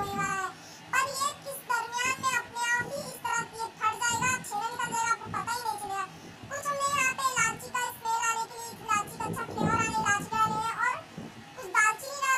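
A child singing a tune in a high voice, in short phrases of held and gliding notes.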